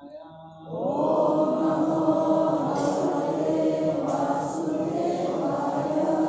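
Devotional chanting by a group of voices in unison: long held, melodic lines that start about a second in.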